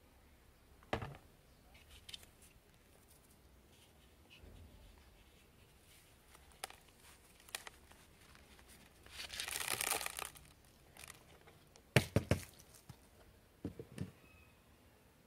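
Plastic flower pot being handled to free a plant: a knock about a second in, scattered small clicks, a rustling scrape of soil and pot for about a second and a half as the root ball slides out, then a few sharp knocks of plastic near the end.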